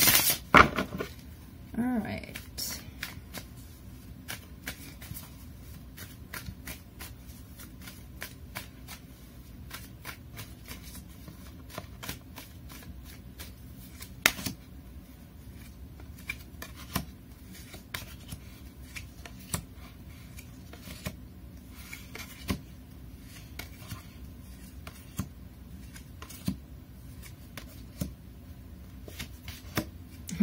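Tarot cards being shuffled and laid down: a scatter of soft snaps and taps, with one sharper snap about halfway through.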